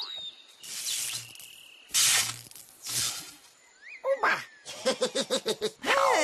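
Cartoon sound effects and creature noises: three short noisy puffs, then squeaky gliding cries and a quick run of about eight pulses a second, ending in a falling glide.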